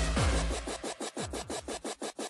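Early hardcore DJ mix: fast distorted kick drums, about three a second, until the bass cuts out less than a second in and the music turns into rapid choppy stutters of DJ scratching.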